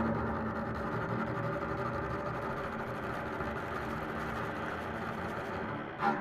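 Double bass with a chamber ensemble of flute, clarinet, viola, piano and percussion, holding a dense, sustained passage of contemporary music. It forms a steady low drone of many held tones, without clear attacks.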